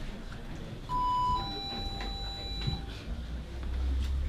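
Electronic two-tone chime: a short higher note about a second in, then a longer, lower note held for about a second and a half, heard over low room murmur.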